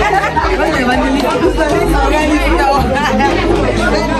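Several women chattering and laughing over one another, with music playing underneath.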